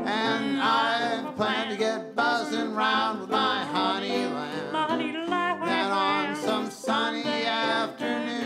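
Live old-time duet singing of an early 20th-century popular song, the voices wavering with vibrato, over plucked-string accompaniment.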